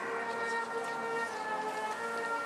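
Band music: several wind instruments holding long, steady chords that change note in steps.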